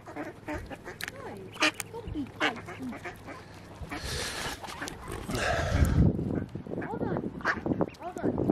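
Mallard hen and ducklings calling at the water's edge, short quacks and peeps scattered through. A rush of noise comes about four seconds in, followed by a low rumble near six seconds.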